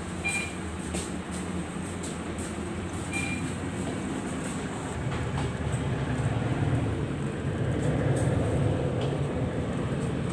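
Steady low rumble of a city bus's engine and running gear heard from inside the passenger cabin, growing louder about halfway through. Two short high beeps sound in the first few seconds.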